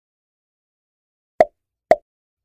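Two short cartoon-style pop sound effects about half a second apart near the end, after silence, marking on-screen graphics popping into view.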